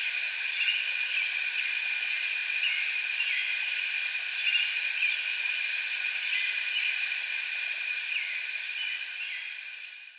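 Chorus of katydids calling, a dense, steady, high-pitched buzzing with a rapid pulsed chirp repeating about four times a second. The chorus fades out near the end.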